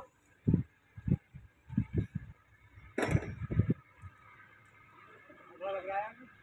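Indistinct voices in short bursts with quiet gaps between them.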